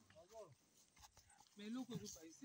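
Faint voices talking briefly, twice, with a quiet gap between.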